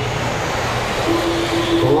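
Electric 1/10-scale RC buggies racing on an indoor dirt track, a steady mix of motor whine and tyre noise. A man's voice calls out "four" near the end.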